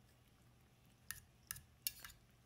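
Metal fork stirring wet cat food in a stainless steel bowl, clinking faintly against the bowl three times in the second half.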